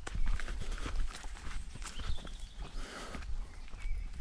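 Footsteps of a hiker walking a forest path through ferns and undergrowth: an irregular run of crunches and rustles from the ground and plants brushing against the legs, over a low rumble on the microphone.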